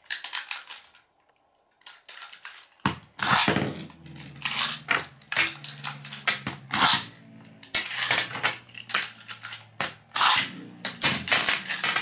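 Beyblade spinning tops launched into a plastic tray about three seconds in with a rasping rush, then whirring with a steady low hum and clacking against each other and the tray walls in rapid, irregular clicks and knocks.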